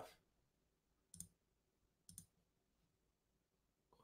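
Near silence broken by two faint short clicks, about a second and two seconds in.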